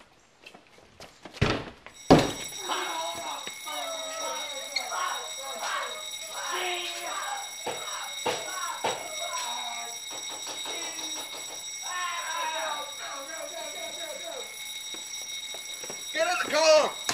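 Two loud bangs about a second and a half and two seconds in. Then muffled, unclear voices over a steady high-pitched electronic whine, alarm-like, that starts with the second bang and runs on.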